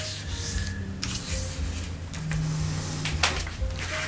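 Acrylic-painted printing paper rubbing and rustling under the fingers as a corner is folded in to the centre and its crease is pressed down, in a few uneven strokes.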